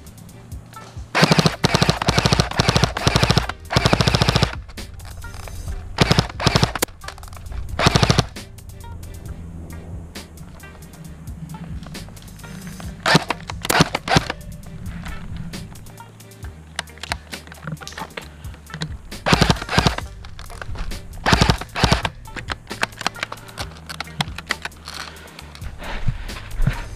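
Airsoft rifle firing in rapid full-auto bursts, a long run of shots in the first few seconds and shorter bursts after, with background music underneath.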